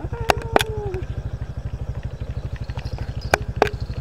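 Motorcycle engine idling with an even, rapid low beat, and two pairs of sharp clicks, one pair near the start and one near the end.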